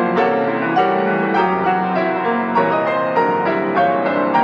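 Feurich grand piano played four hands by two pianists: a steady flow of chords and melody with frequent fresh note attacks.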